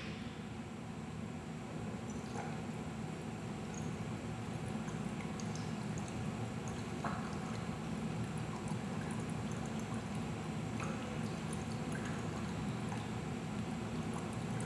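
Breath blown through a drinking straw, bubbling steadily into limewater in a test tube, with faint scattered pops: the limewater test for carbon dioxide.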